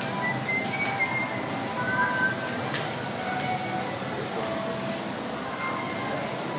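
Steady hubbub of a crowded pedestrian street: a continuous wash of crowd noise with faint distant voices drifting through.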